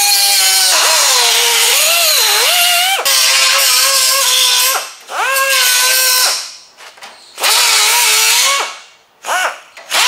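Pneumatic cut-off wheel cutting sheet metal: a high whine that sags in pitch as the wheel bites and climbs back as it frees. It comes in several bursts of one to three seconds as the trigger is let off and squeezed again, with a last very short burst near the end.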